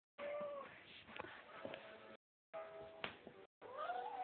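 Domestic cat meowing over its prey: a short, steady call at the start and a rising-then-falling call near the end, with a few sharp clicks between. The audio cuts out briefly twice.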